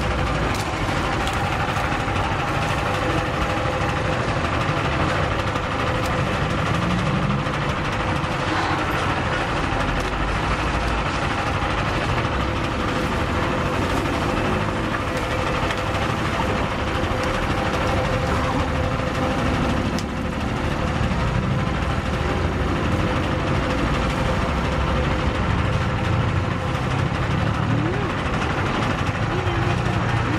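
Motor-driven sugarcane juice press running with a steady hum, its steel rollers crushing stalks of cane as they are fed through by hand.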